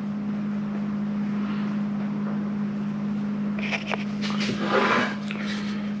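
A steady low hum throughout. About three and a half seconds in comes a second or so of scratchy scraping and clicking as the pine board and the corbel are handled on the workbench.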